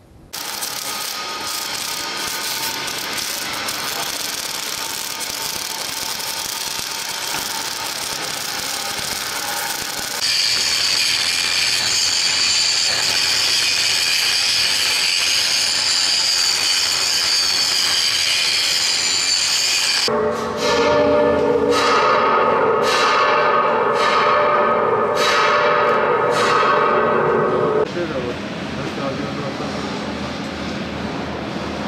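Steel workshop noise. In the middle, for about ten seconds, an angle grinder cuts steel with a steady high whine. Before and after it comes other noisy metalwork, and from about twenty seconds in, a louder steady hum with regular knocks about once a second that stops a couple of seconds before the end.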